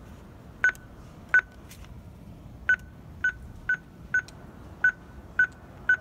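Linear AE-100 telephone entry keypad beeping as a phone number is keyed in: nine short beeps of one and the same pitch, one per key press, at uneven intervals.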